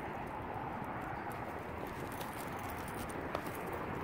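Footsteps of a person walking on pavement over a steady noise on the microphone, with one sharper tap a little over three seconds in.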